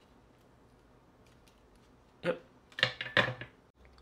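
Near silence, then a few short clatters and clinks of tools being handled and set down, about two seconds in.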